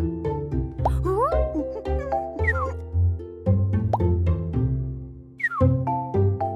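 Light children's background music with a bass line and short plucked notes. Cartoon sliding-whistle effects glide in pitch about a second in, around two and a half seconds, and again near the end. The music dips briefly just before the last glide.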